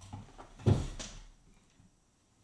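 A single loud thump with some clattering and rustling around it, handling noise on the recording gear as a headphone cable is unplugged and fiddled with.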